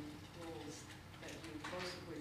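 Faint, indistinct speech: a voice talking quietly, too soft for the words to be made out.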